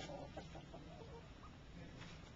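Faint short clucking calls from a fowl, a few of them in the first half second, then only low background noise.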